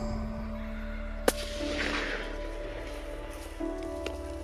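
A single rifle shot about a second in, one short sharp crack heard over steady background music; it is the shot that drops a rusa stag at about 30 yards.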